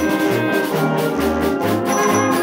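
A high school concert band of brass, woodwinds and percussion plays together, mixed from separate home recordings into a virtual ensemble. Held chords sit over a low bass line that moves in short, separate notes.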